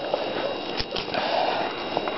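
Faint rustling and handling noise of a twig being pushed into the mud and sticks of a beaver lodge, with a couple of small clicks just under a second in.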